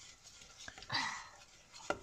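Faint stirring of molten sugar syrup with a wooden spoon in a stainless-steel saucepan as bicarbonate of soda is tipped in, with a short scraping swell about a second in and a light click near the end.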